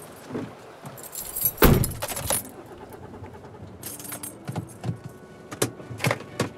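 A car door shutting with a loud thud about a second and a half in, then keys jingling with small clicks and taps from inside the car cabin.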